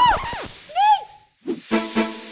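A long, high snake-hiss sound effect begins about half a second in, just after a woman's short scream. Background music with short hits comes in for the second half.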